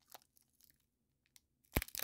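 Foil trading-card pack being pulled open by hand: a few faint crinkles, then loud crinkling and tearing of the foil wrapper near the end.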